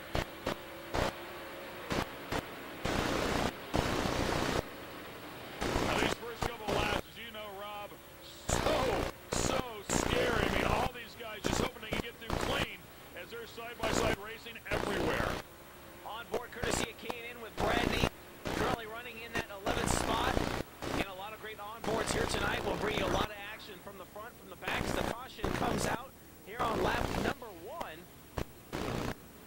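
A field of dirt late model race cars' V8 engines running hard as the race starts, heard as loud, choppy bursts of engine noise that cut in and out irregularly.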